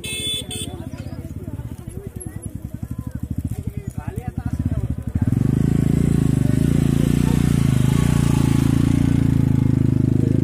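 A small engine thudding in quick, even firing pulses, with voices over it. About five seconds in it turns into a louder, steady engine drone.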